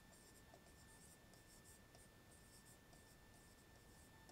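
Faint scratching of a pen writing on a board in short, irregular strokes, over a low steady hiss.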